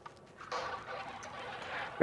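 Roulette chips and a hand sliding across the felt betting layout: a soft, steady rustle starting about half a second in.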